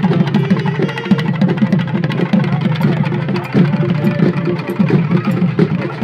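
Folk drum ensemble of barrel drums and a frame drum beaten with sticks, playing a fast, unbroken rhythm.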